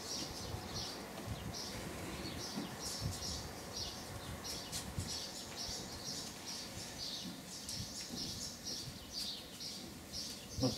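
Small birds chirping over and over, short high chirps about two or three a second.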